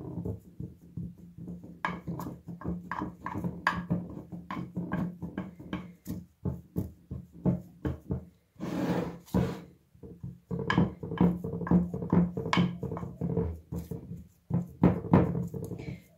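A metal spoon tamping a crumbly ground sunflower-seed and peanut halva mixture into a plastic-wrap-lined dish makes a run of quick, irregular taps and presses. A steady low hum runs underneath, and a brief scraping rustle comes about nine seconds in.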